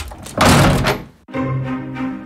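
A heavy wooden door slammed shut with a loud thunk that rings on briefly, then music with held notes begins about a second and a half in.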